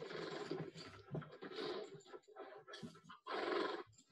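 Horses in a film soundtrack: noisy bursts of horse sounds and movement, with the loudest and longest burst near the end.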